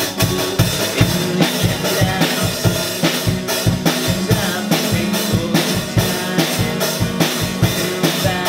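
Acoustic guitar strummed with a drum kit playing a steady beat: a two-piece band performing a song live.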